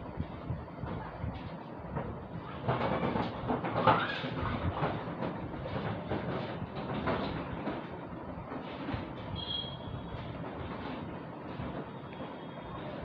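Continuous rumbling, rattling noise, louder around three to five seconds in, with a short high tone a little before the end.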